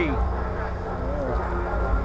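Outdoor crowd ambience: wind buffeting the microphone as a deep, uneven rumble, over a steady droning buzz and a few faint voices.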